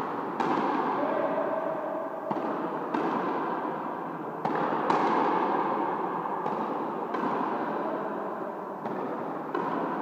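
Frontenis rally: the hard rubber ball cracking off racket strings and the front wall, about nine sharp hits, often in pairs half a second apart. Each hit rings on with long echo in the high-walled indoor court.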